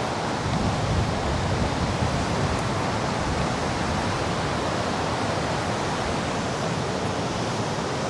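Steady rushing noise of wind and breaking sea surf, with wind buffeting the microphone.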